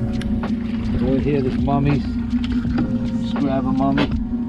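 Boat's outboard engine running with a steady low hum, with people talking and a few light knocks from handling gear on deck.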